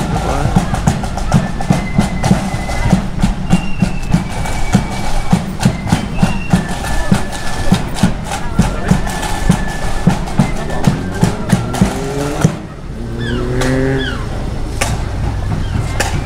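Marching band music from the parade: drums beating steadily under high, held notes. The band stops suddenly about twelve and a half seconds in, and a voice follows.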